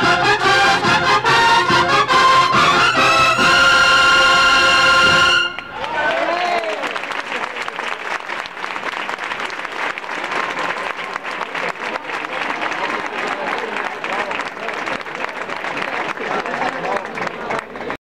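Brass band playing the final bars of a processional march, ending on a loud held chord that cuts off about five seconds in. The crowd then breaks into applause, with voices calling out.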